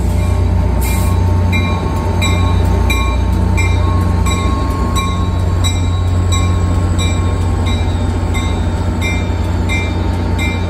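Caltrain F40PH diesel locomotives idling with a steady, heavy low drone. A bell rings on top of it with even strokes, about three every two seconds, starting about a second in.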